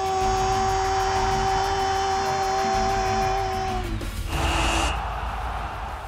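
A football commentator's long goal shout, held on one steady note over crowd noise, breaking off about four seconds in. A short whooshing transition sound follows.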